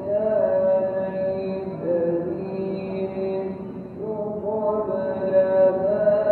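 A voice chanting in long held notes that glide slowly from pitch to pitch, like devotional recitation.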